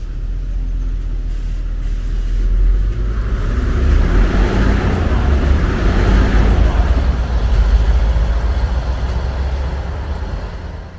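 A city bus passing close by and moving off up the road: its engine rumble builds after a few seconds and stays loud through the middle, with road and engine noise rising alongside.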